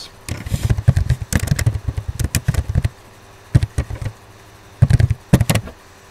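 Typing on a computer keyboard: a quick run of keystrokes lasting about two and a half seconds, then a few separate key taps and a short flurry near the end.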